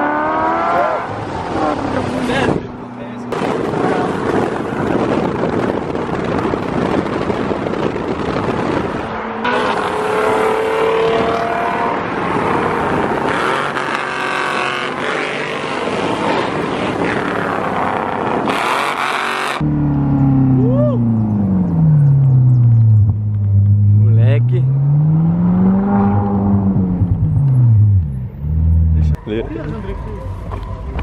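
Ferrari convertible driving with the top down: engine revs rising in the first seconds, then a loud rush of wind and road noise over the engine. In the last third a deep note slowly falls and rises again in pitch, then cuts off.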